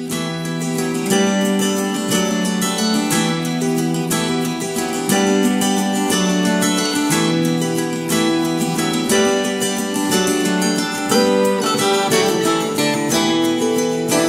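Instrumental intro of a song: acoustic guitar strummed and plucked in a steady rhythm, before any singing comes in.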